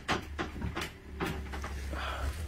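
Wooden trundle bed being pushed in under a daybed frame, knocking and scraping in a few short jolts as it catches: the trundle is rubbing on the wood where there is too little clearance.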